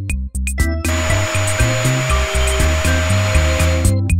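Vacuum cleaner sound effect: a steady motor whine with a rushing hiss that starts about a second in and cuts off just before the end, over background music.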